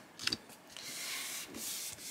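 Hands rubbing a paper envelope down onto a sticky Cricut cutting mat: a couple of small taps, then two strokes of paper rustle, each about a second long.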